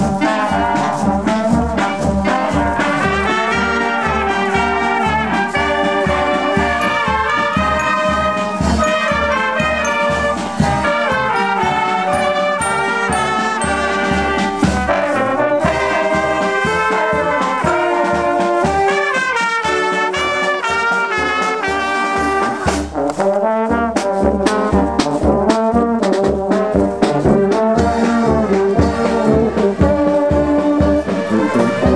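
Marching wind band playing as it marches: clarinets and brass, including trombones and a sousaphone, over a steady beat.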